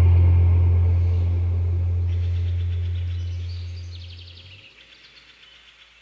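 The song's final chord on bass and guitar, heavy in the low end, rings out and fades away, dying out about four and a half seconds in. From about two seconds in, faint rapid chirping of outdoor ambience comes up underneath and carries on.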